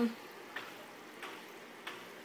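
Pet water fountain running: a faint, steady fizz and trickle of circulating water with a few light ticks. The owner says it doesn't normally make this sound and puts it down to the fountain still filtering the water.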